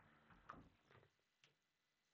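Near silence: faint room tone with three faint ticks or clicks.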